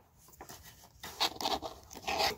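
Paper booklet being handled and its page lifted to turn, a soft rustle and scrape of paper that starts about a second in, after a faint first half.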